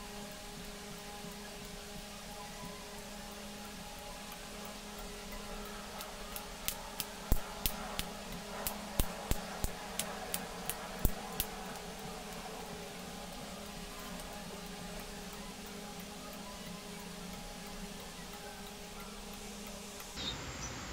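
Relays on a 16-channel relay module clicking one after another, about fifteen sharp clicks at two to three a second, as the channels switch off in turn. A steady low hum runs underneath.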